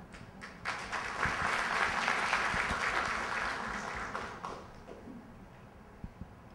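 Audience applauding, starting about half a second in, then fading out over the last couple of seconds.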